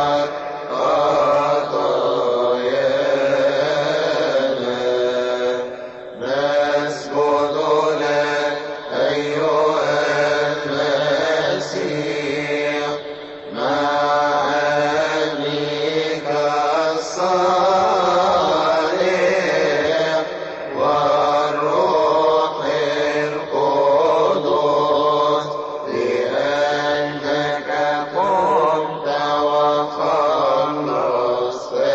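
A man's solo voice chanting a Coptic liturgical hymn into a microphone, in long drawn-out phrases that glide between notes, with a couple of short breaths between phrases.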